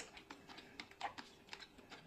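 A person chewing a crisp fried food up close: faint, irregular crunches and wet mouth clicks, the loudest about a second in.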